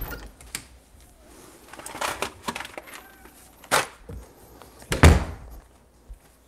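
A few scattered knocks and clicks of things being handled off-camera, with a cluster about two seconds in and the loudest thump about five seconds in.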